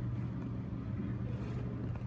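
Steady low background hum with a faint even noise underneath, no voices.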